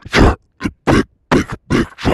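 Loud, heavily distorted grunting sounds: about six short, harsh bursts in quick succession, with brief silent gaps between them.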